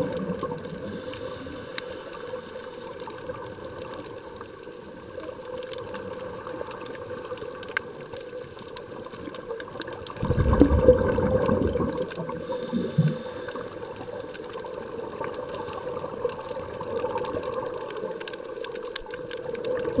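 Underwater sound of a scuba diver's regulator: a burst of exhaled bubbles rushing out about halfway through, lasting about two seconds. Under it a steady hum and scattered faint clicks.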